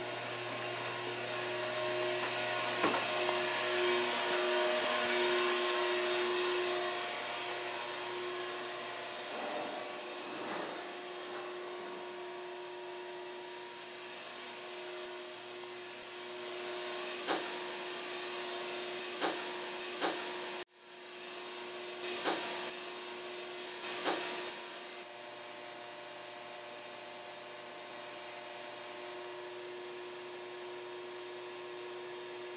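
A steady mechanical drone with a hiss, held on a low hum that is fuller for the first several seconds. Past the middle come five sharp knocks, and the sound cuts out abruptly for a moment after the third knock.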